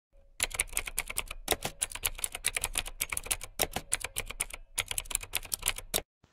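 Rapid typing: a fast, irregular run of key clicks, several a second, with one brief pause near the end.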